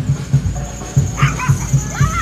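A small dog yipping a few times, starting about a second in, over loud parade music with a steady low beat.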